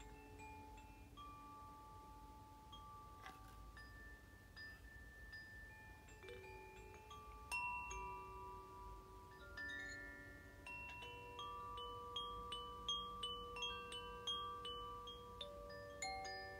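Metal chimes ringing softly: single notes at different pitches, each struck and left to ring for several seconds. A quicker run of higher notes comes in the second half.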